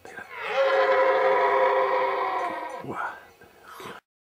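Red deer stag roaring: one long, steady, loud call lasting about two and a half seconds, then a shorter falling call near the end.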